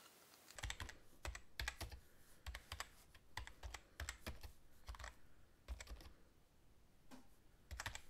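Faint, irregular light clicks and taps, a few each second, with a quieter gap about six seconds in.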